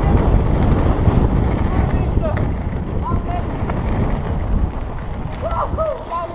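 Wind rushing over a helmet camera's microphone and the rattle and rumble of a downhill mountain bike riding fast over a dirt trail. A few short pitched sounds come through about two and three seconds in, and a pair near the end.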